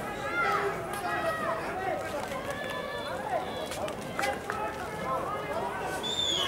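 Several voices shouting and calling over one another on a football pitch, players and touchline staff, with a few sharp knocks in between.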